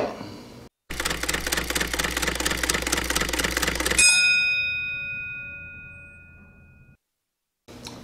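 Intro sound effect: rapid, even clicking for about three seconds over a low hum, then a single bell-like ding about four seconds in that rings and fades away over about three seconds.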